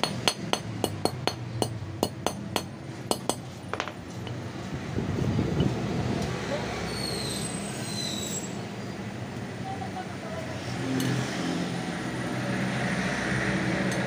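Ball-peen hammer tapping a bent steel ABS sensor ring from a Yamaha NMAX against a steel block to straighten it: about a dozen quick, light metal strikes, roughly three a second, that stop about four seconds in.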